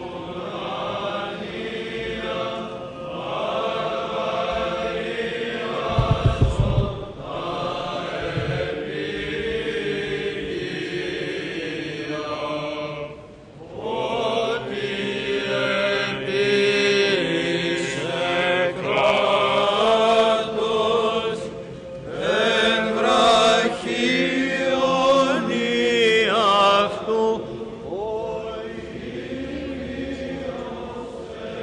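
Byzantine chant sung by a group of male chanters, in long melodic phrases with a short pause about halfway through. A brief low thumping sound about six seconds in.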